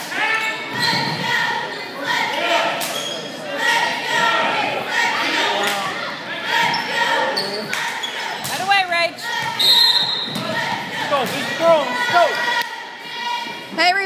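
Basketball bouncing on a gym's hardwood floor during play, with shouts and calls from players and spectators throughout.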